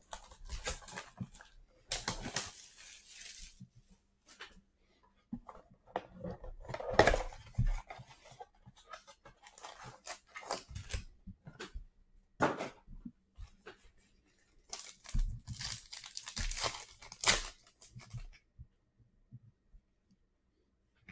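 Cardboard blaster box of trading cards being torn open and its wrapped card packs ripped and crinkled, in irregular bursts of tearing and crackling with quieter handling between.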